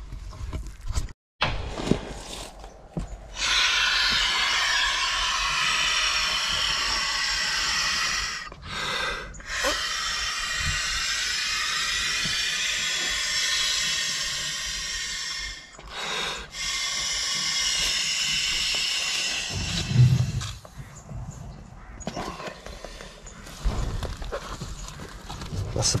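A man blowing up an inflatable swim buoy by mouth: three long breaths into the valve, each several seconds, with quick pauses to inhale between them. After the third breath comes a short low thump, then handling of the bag.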